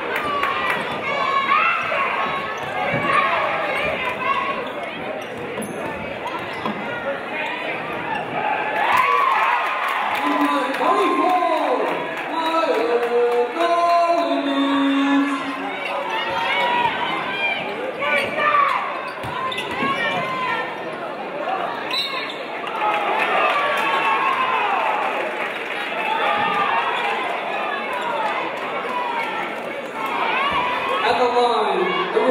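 Basketball dribbled on a hardwood gym floor during play, under a steady mix of crowd and player voices calling out in the gym.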